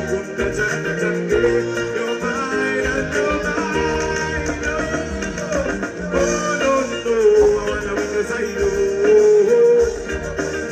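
A live music performance: a male singer singing into a handheld microphone over backing music with a steady bass line.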